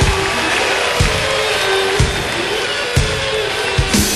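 Live electric blues band playing: sustained notes, one bending up and back down late on, over a drum hit about once a second.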